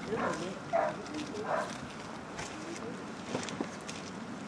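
Low voices encouraging a dog, then a few light knocks from an agility seesaw (teeter) as the dog is walked along it, about three seconds in.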